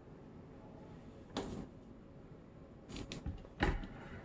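A few short knocks and bumps of things being handled on a tabletop, one about a second and a half in and a quick cluster near the end, the last the loudest.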